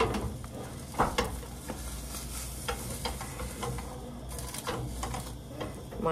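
Egg frying in a skillet, a steady sizzle, with a few light taps and knocks from food being handled, the loudest about a second in.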